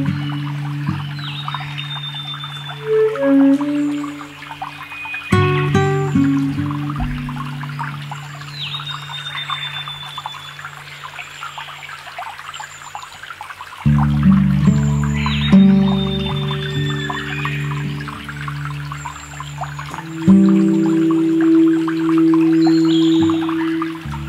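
Ambient electronic music: held synth drone chords that shift about three times, layered over a field recording of a shallow stream trickling over stones. A short high call rises out of the texture about four times, roughly every seven seconds.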